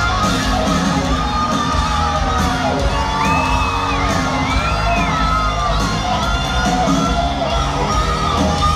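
Live rock band playing through a stadium PA, with an electric guitar to the fore and a large crowd cheering and whooping over the music. Gliding high notes rise and fall in the middle.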